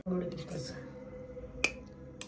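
A single sharp click about one and a half seconds in, over quiet room sound.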